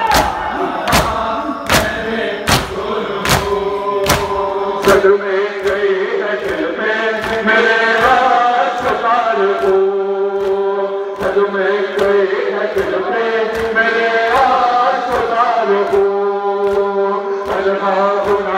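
Men chanting a Muharram noha in unison, with the sharp slaps of matam (hands beating bare chests) keeping the beat about every 0.8 s. The slaps are loudest in the first five seconds, then fainter and quicker under the singing.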